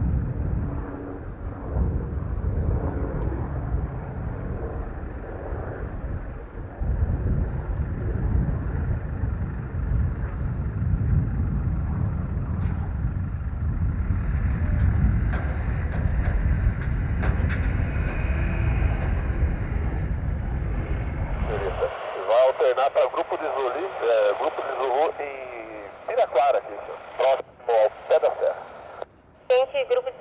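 A steady low rumble with no clear pitch, cutting off suddenly about two-thirds of the way through, followed by voices over an air-traffic radio.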